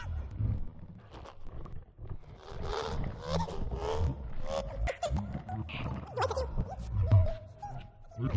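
Electroacoustic computer music made from a granularly processed human voice in Kyma: broken-up vocal fragments gliding up and down in pitch over low, pulsing sounds, with scattered clicks.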